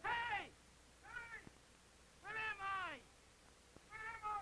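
A cartoon character's voice crying out in four short, high, falling wails, the first the loudest and the last two back to back.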